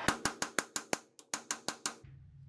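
Hand ratchet with a 13 mm socket clicking quickly, about six clicks a second with a short pause in the middle. The last stuck bolt on the 12-bolt rear differential cover has broken loose after heating and is being backed out.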